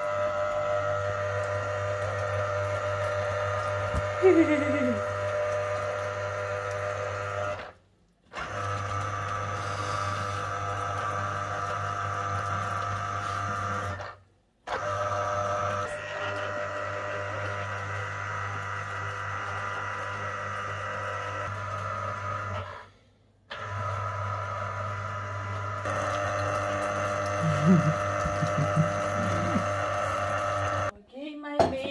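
Tefal electric citrus juicer's motor running with a steady hum as orange halves are pressed onto its reamer, cutting out briefly three times. A short voice sound about four seconds in and a few more near the end.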